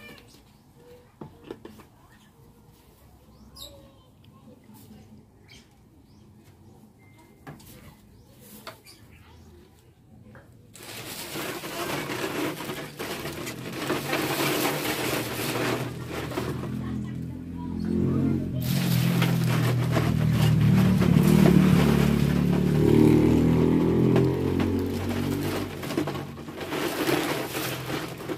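A few faint clicks of plastic bottles being handled, then about ten seconds in a loud, steady splashing rush begins as liquid dishwashing soap is poured from a plastic dipper through a plastic funnel into a plastic bottle. It falters briefly about halfway through, then goes on.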